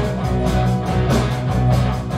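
Live rock band playing: electric guitar, bass and drum kit, with the guitar to the fore over a steady beat.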